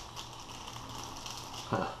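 A plastic-wrapped bamboo sushi mat being squeezed and then unrolled from around a maki roll: faint clicking of the bamboo slats and crinkling of the plastic film. A short voiced sound, the start of a laugh, comes near the end.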